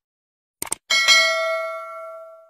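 Quick double mouse-click sound effect, then a bright notification-bell chime that rings and fades away.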